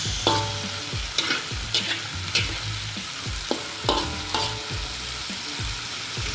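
Diced potato, onion and lemongrass sizzling in hot oil in a wok, frying until golden. A metal spatula scrapes and knocks against the wok several times as the food is stirred, with short ringing scrapes.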